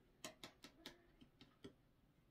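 Faint, irregular crackles and clicks, about six or seven in two seconds, from stiff wired ribbon being folded and pressed flat by hand against a cutting mat.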